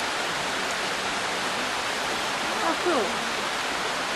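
Steady, even hiss, with a brief spoken exclamation about three seconds in.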